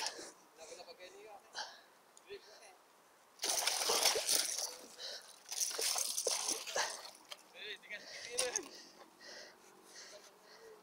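A hooked giant snakehead (toman) thrashing and splashing in shallow water at the stony river edge. The splashing comes in bursts, the loudest about a third of the way in, with more around the middle and near the end.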